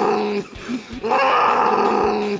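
A cartoon monster's voice roaring in long, loud growls. One growl ends early on and another starts about a second in.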